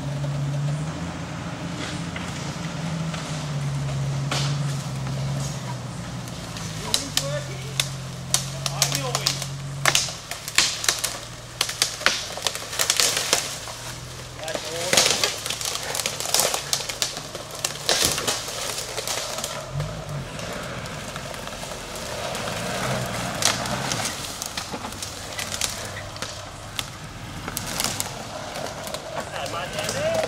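Suzuki Sierra four-wheel-drive's engine running at low revs while it crawls down a steep bush track, its note holding and stepping in pitch through the first ten seconds. Then a run of sharp crackles and snaps from sticks and leaf litter under the tyres.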